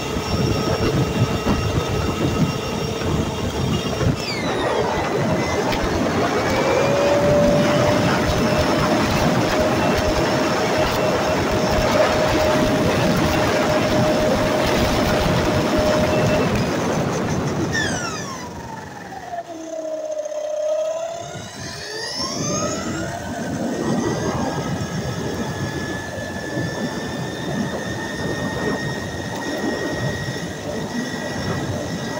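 Onboard sound of a stock Kyosho Fazer Mk2 electric RC car running fast on asphalt: a steady motor and gear whine over a loud rush of tyre and wind noise. A little past the middle the rush drops and the whine falls in pitch as the car slows, then rises again as it speeds back up.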